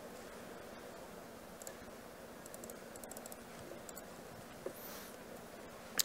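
Faint room tone with scattered soft clicks of typing and clicking on a laptop keyboard, one slightly sharper tick near the end.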